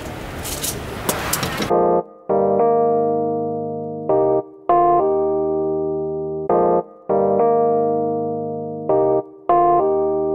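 Background music of slow electric piano chords, each struck and left to ring and fade. It comes in under two seconds in, after a brief stretch of noisy background sound.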